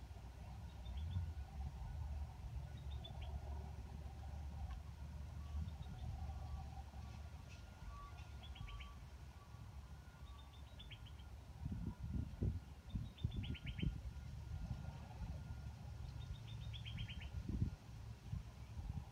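A small bird singing short, quick runs of a few high notes that fall in pitch, repeated every second or two, over a low steady rumble. A few dull knocks come about two-thirds of the way in and again near the end.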